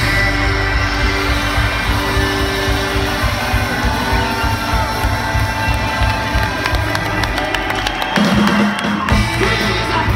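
A soul band playing a song live at concert volume, heard from the audience: electric guitar, bass and drums together through the PA.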